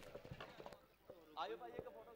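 Quiet background with a faint distant voice about one and a half seconds in and a few light knocks scattered through.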